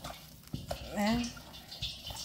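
Bare hands squishing and turning raw chicken wings coated in flour and spices in a glass bowl: soft wet squelches with a few light knocks. A short voice sound from the cook comes about a second in.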